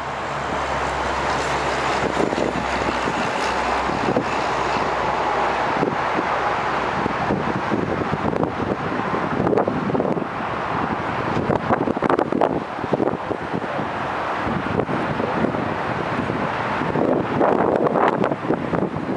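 Mercury Marauder's 4.6-litre V8 running as the car drives slowly up across the lot, a low rumble under heavy wind noise on the microphone.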